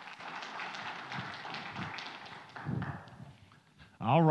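Footsteps and rustling on a church platform, with scattered light taps and a short low sound near the end.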